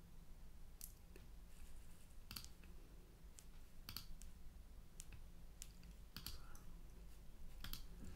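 Faint, scattered clicks of a computer mouse, roughly one a second, over a low steady hum, as files and folders are clicked open.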